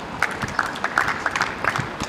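Scattered applause from a small crowd of tennis spectators: a quick run of separate hand claps lasting about a second and a half, then dying away near the end.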